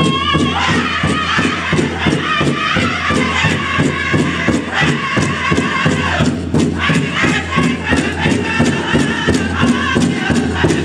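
Northern-style powwow drum group singing a song for fancy shawl dancing: several men's voices singing high and wavering together over a steady, fast beat on a big powwow drum.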